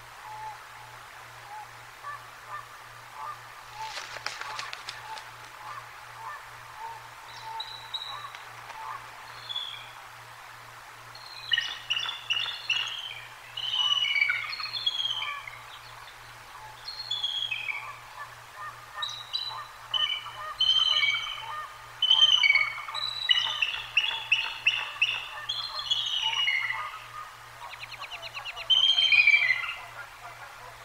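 Bald eagle calling: bursts of high, piping chattering notes, each falling in pitch, repeated many times from about a third of the way in and loudest near the end.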